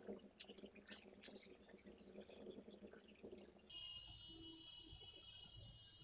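Near silence with faint small clicks and taps from hands handling glue and craft pieces on a tabletop. About two-thirds of the way through, a faint steady high hum comes in.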